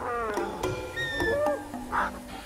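Animal-like calls from a dinosaur creature: a call that falls in pitch at the start, then higher gliding chirps about a second in.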